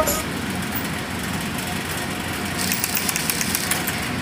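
Steady mechanical background hum of an industrial sewing workshop, with faint rapid ticking for about a second near the end.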